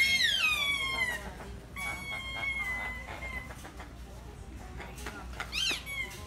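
Squeaky dog toy squeezed three times: a loud squeal falling in pitch over about a second at the start, a steadier held squeak about two seconds in, and a short squeak near the end.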